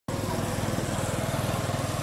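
A small engine running steadily with a fast, even pulse.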